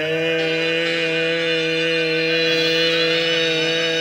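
A man singing one long held note, steady in pitch with a slight vibrato.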